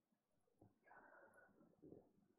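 Near silence: room tone, with a faint brief rustle or breath about a second in.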